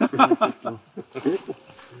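Men's voices in a brief lull in the talk: low murmuring and a short laugh near the end.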